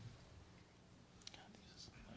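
Near silence: room tone with a low hum and a few faint, distant voices.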